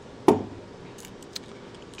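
One sharp knock about a quarter-second in, followed by a few faint clicks and light jingles as a plastic keychain remote with a metal split key ring is handled.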